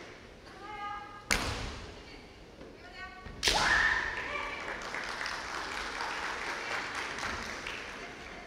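Kendo bout: two sharp cracks, about a second and a half in and about three and a half seconds in. The second runs straight into a loud kiai yell that rises in pitch for about a second, and fainter shouts come before each crack. The hall echoes throughout.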